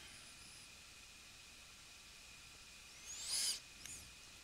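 Quiet room tone with a faint steady hiss, broken about three seconds in by one brief high-pitched rising squeak, with a smaller one just before the end.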